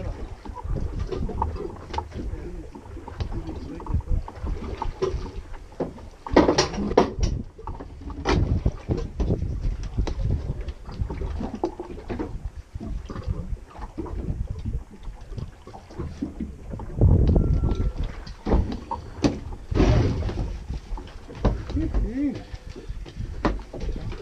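Wind on the microphone and water against the hull of a small boat drifting at sea, with scattered knocks and clatter of gear on the deck and low indistinct talk.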